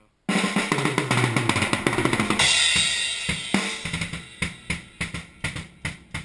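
Acoustic drum kit played fast and dense, with crashing cymbals, starting suddenly about a quarter second in. From about halfway through, the playing thins out to separate, spaced hits.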